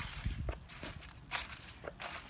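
Footsteps on dry fallen leaves, about five uneven steps with leaf crackle.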